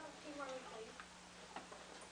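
Faint children's voices speaking on stage, with three sharp clicks about half a second apart and a steady low hum underneath.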